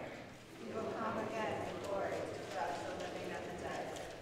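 Speech only: a person speaking.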